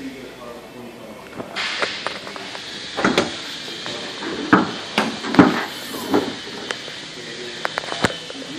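A run of clicks and knocks, loudest about five and a half seconds in, as a car hood is unlatched and raised, over a steady hiss that starts about a second and a half in.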